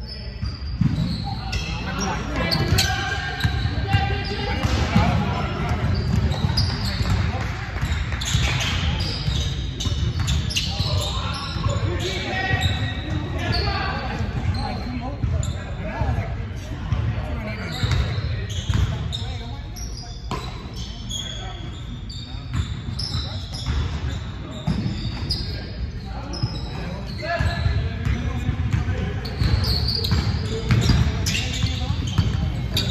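A basketball bouncing on a hardwood gym floor during play, mixed with players' shouting voices, all echoing in a large gym.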